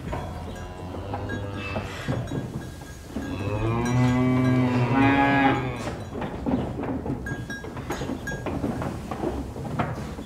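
A cow mooing once: a single long, low call of about two and a half seconds near the middle, its pitch stepping up slightly toward the end. Scattered light clicks and clinks are heard throughout.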